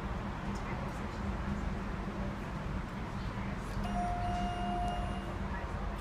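Elevator landing chime sounding once as a single steady electronic tone lasting just over a second, about four seconds in: the arrival bell is working. A steady low hum runs underneath.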